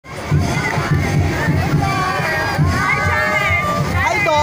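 Street crowd cheering and shouting, many voices overlapping, over a steady low beat.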